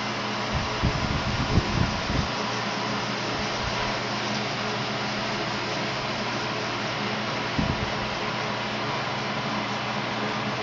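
Cove SH-5 food shredder running steadily, a continuous motor whir with a low hum. There are a few low thumps in the first two seconds and one more near the end.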